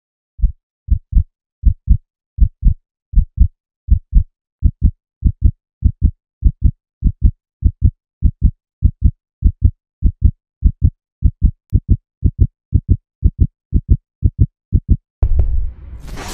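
Heartbeat sound effect: pairs of short low thumps repeating about every three-quarters of a second with dead silence between, quickening slightly. Near the end the beats stop and a loud burst of noise cuts in.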